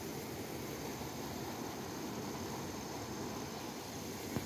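Steady, even hiss of background noise with no distinct events standing out.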